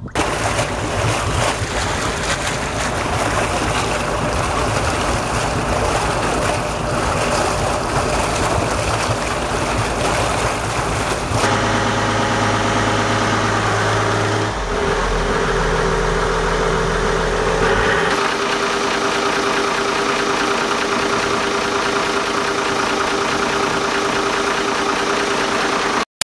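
Volvo Penta KAD42A marine diesel running steadily, its note changing in steps several times in the second half as the throttle lever is moved.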